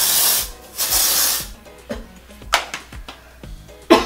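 Aerosol deodorant sprayed in two short hisses, each about half a second long, one right after the other. A sharp click comes near the end.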